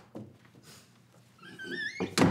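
A door's hinge squealing as the door swings open: a wavering squeak that rises in pitch over the last half-second, after a soft knock near the start.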